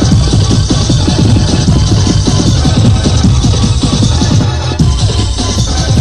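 Loud electronic rave dance music from an early-1990s DJ mix, with a fast driving beat and heavy bass; the bass drops away briefly about three-quarters of the way through before the beat comes back in.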